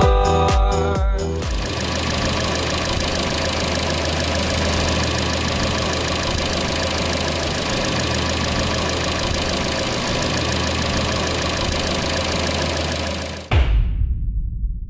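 Nissan March Sense 2016's four-cylinder petrol engine idling steadily, heard from the open engine bay. Music plays for the first second or so, and the idle cuts off abruptly near the end.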